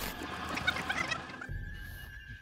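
Birds calling: a quick scatter of short, high notes in the first second or so, then a faint steady high tone from about halfway.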